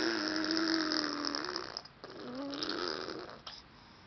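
A baby blowing raspberries: two buzzing lip trills with a hummed voice under them. The first lasts nearly two seconds and the second, shorter one comes just past the middle.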